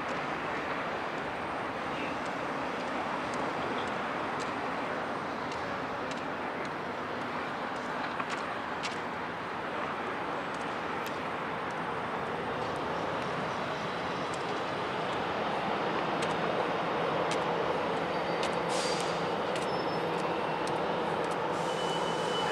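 Boeing 787-8's Rolls-Royce Trent 1000 engines at taxi power, a steady jet rush that grows slightly louder over the last several seconds as the airliner comes closer.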